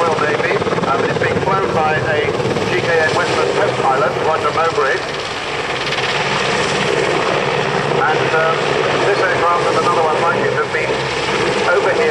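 Royal Navy Merlin HM1 helicopter running steadily, its three turboshaft engines and rotor making a continuous noisy drone, with a public-address commentator's voice heard over it.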